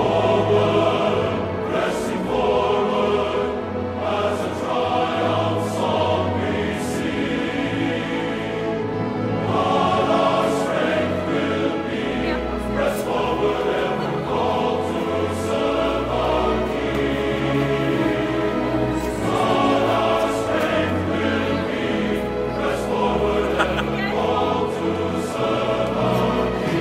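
Choral music: a choir singing over instrumental accompaniment.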